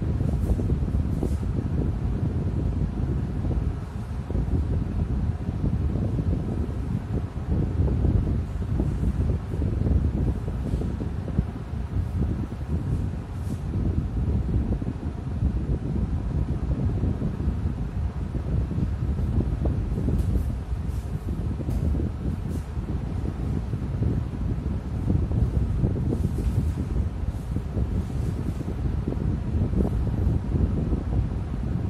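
Steady low rushing noise that wavers slightly in level.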